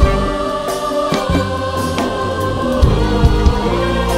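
Live Egyptian inshad (Sufi devotional chant) music: a choir sings long held notes over a string section, qanun and keyboard, with plucked and struck accents scattered through.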